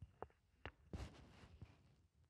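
Near silence with a few faint, short clicks and knocks: handling noise from a handheld microphone being set down.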